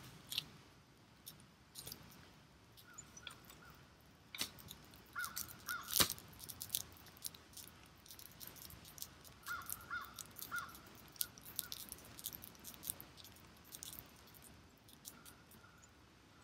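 Crows cawing in short runs of two or three calls, several times over, with scattered sharp clicks and snaps and one loud knock about six seconds in.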